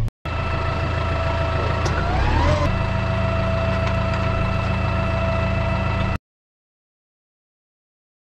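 Diesel tractor engine running steadily with an even hum, with a brief rising whine about two seconds in. The sound cuts off abruptly to silence about six seconds in.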